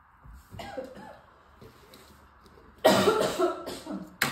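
Small toy cars splashing as they are dropped into a plastic tub of water: a small splash just after half a second in, then a louder one about three seconds in.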